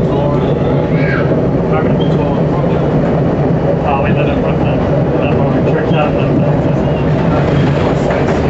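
Elevated subway train running along the track, a steady loud rumble of wheels and car heard from inside the train.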